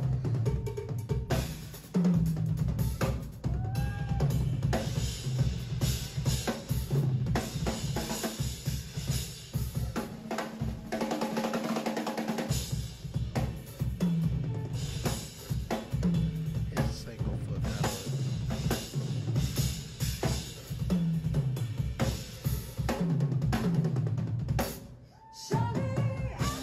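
Live drum kit solo: fast, dense patterns across bass drum, snare and toms, with rimshots and rolls. About halfway through, the bass drum drops out for a couple of seconds while the rest of the kit keeps playing.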